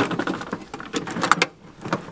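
Items being packed into a metal ammo can: a plastic zip bag crinkling and a nylon pouch rustling, with scattered light clicks and knocks against the metal. It quietens in the second half.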